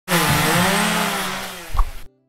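A power saw sound, likely a sound effect, starting suddenly and fading away over a second and a half, with a short low thump near the end.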